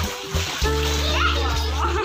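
A small child splashing water in an inflatable paddling pool, with a child's voice, over background music with steady held bass notes that drop out briefly at the start.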